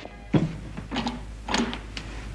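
Three short knocks or thumps, a little over half a second apart, over a steady low hum.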